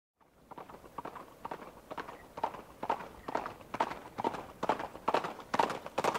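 Steady rhythmic footfalls, about two a second, growing louder as they approach.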